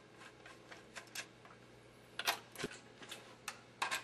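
Light, scattered clicks and taps of plastic radiation-shield plates and screws being handled and lined up, with a small cluster of clicks a little past halfway and a few more near the end.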